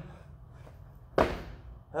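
A single thud about a second in: a man's feet landing on a rubber-matted gym floor after jumping up and over a flat bench.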